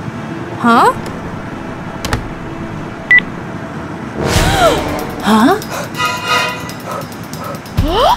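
Background music with short wordless vocal sounds, and one brief high beep from a mobile phone about three seconds in, a message notification.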